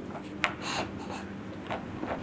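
A stiff paper card being handled: a small click about half a second in, then brief rubbing and rustling of paper.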